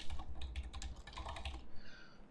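Typing on a computer keyboard: a quick run of keystrokes, about a dozen, entering two words. It stops shortly before the end.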